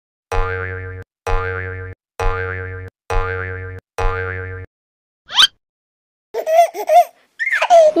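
Cartoon 'boing' sound effect, five times about a second apart, each with a wobble in pitch. It is followed by a quick rising swoop, and near the end by short bursts of a cartoonish voice.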